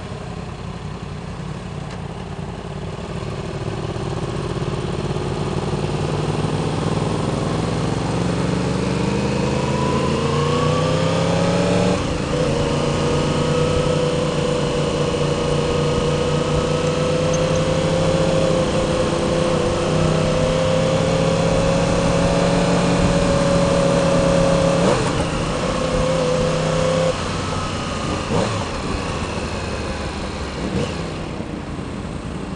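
Sport motorcycle engine pulling away slowly in traffic: its pitch rises steadily for several seconds, then holds at an even cruise, and drops in two steps near the end as the throttle is eased.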